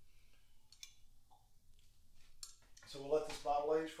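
A quiet stretch of room tone with a few faint sharp clicks, then a man speaking from about three seconds in.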